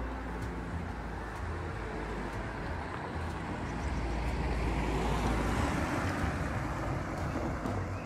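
A car driving along the street, its engine and tyre noise swelling to a peak about two thirds of the way through and easing off near the end.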